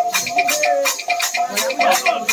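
Devotional sankirtan music: small hand cymbals struck in a steady quick rhythm, about four strikes a second, with a drum.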